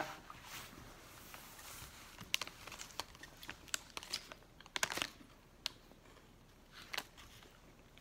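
Soft crunching and crinkling of crispy Golden Grahams S'mores Treats cereal bars being bitten and chewed in their wrappers: scattered small crackles, with a cluster of them about five seconds in.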